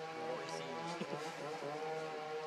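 A steady engine hum holding an even pitch, with brief snatches of people talking over it.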